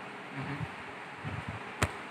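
Steady buzzing room noise, like a running fan, with one sharp click near the end.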